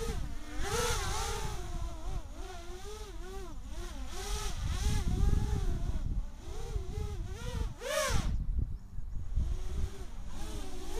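A 3D-flying quadcopter's electric motors and propellers whine in flight. The pitch warbles up and down constantly as the throttle changes, with one sharp rise and fall about eight seconds in.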